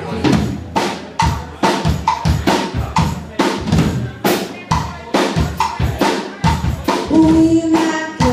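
Live band's drum kit playing a steady rock beat, bass drum and snare hits about two to three a second, with other amplified instruments underneath.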